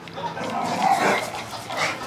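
A Staffordshire bull terrier making short, rough vocal sounds, loudest about halfway through, with a brief rising note near the end.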